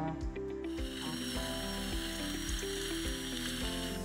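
Background music with a steady beat, and from about half a second in a dental handpiece running with a steady high-pitched whine and spray hiss, stopping at the end.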